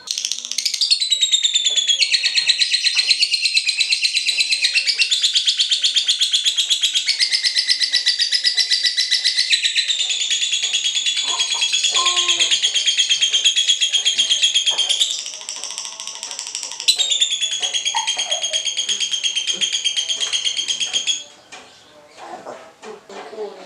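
Lovebird 'ngekek': a long, very rapid, high-pitched chattering trill. It runs unbroken for about fifteen seconds, breaks into a brief quieter stutter, resumes for about four seconds, and stops shortly before the end.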